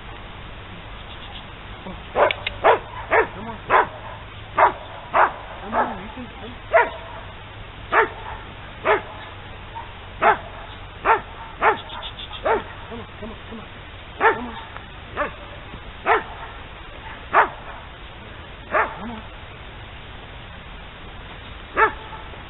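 A dog barking over and over in single, sharp barks, about one or two a second with uneven gaps. The barks start about two seconds in, stop for a few seconds, and one last bark comes near the end.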